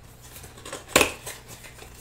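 Small cardboard baseball box being opened by hand: a few light scrapes and taps, with one sharper click about halfway through as the flap is worked loose.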